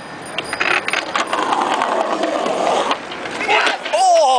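Skateboard wheels rolling over stone paving: a rough, steady rumble broken by scattered sharp clicks as the wheels cross the tile joints.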